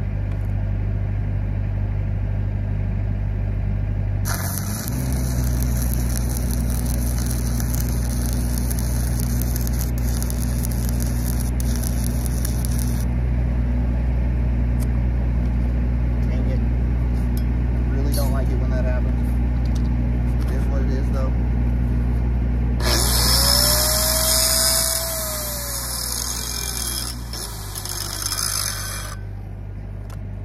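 Stick-welding arc with a 7018 rod, crackling for about nine seconds from about four seconds in as the cap pass goes onto a pipe joint. Under it runs the steady hum of the engine-driven welding machine, which picks up speed as the arc strikes and drops back near the end. Near the end a hand-held angle grinder spins up and winds down over about five seconds.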